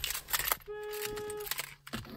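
Vehicle warning chime in a 1999 Jeep Cherokee XJ cabin: a steady electronic beep of one pitch, about three-quarters of a second long, repeating every second and a half or so. A sharp click at the very start and a few lighter clicks come before the beep.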